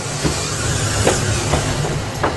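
Inclined elevator cab, a cross between a lift and a funicular, travelling uphill: a steady low hum with a hiss of running noise and a few faint knocks.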